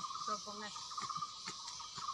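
Steady insect chorus at one even pitch, a continuous fast pulsing chirr.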